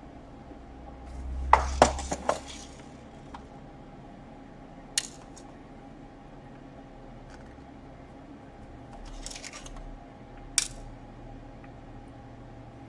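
Small hard clicks and clinks of a precision screwdriver, tiny screws and a plastic screw tray being handled during laptop disassembly: a quick, loudest cluster about two seconds in, single sharp clicks near five and ten and a half seconds, and a softer run of clicks around nine to ten seconds.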